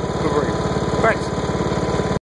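Troy-Bilt Horse XP lawn tractor's twenty-horsepower engine running steadily.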